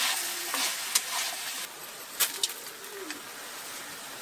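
Fish and tomatoes sizzling in a frying pan while being stirred with wooden chopsticks, with a few sharp clicks of the chopsticks against the pan. The hiss eases slightly partway through.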